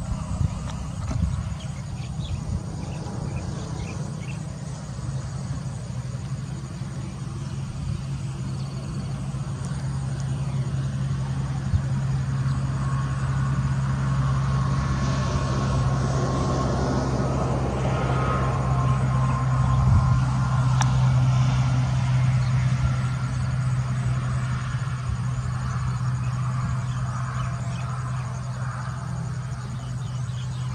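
A steady low engine hum from an unseen motor, swelling through the middle and easing off near the end.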